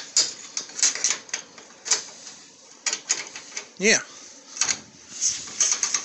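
Irregular light metal clicks and knocks from a removable steel winch post being handled in its square-tube sleeve on a trailer tongue.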